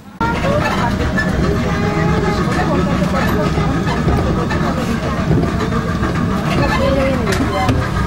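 Steady running of a small tourist road train's engine, heard from aboard the carriage, with people talking over it.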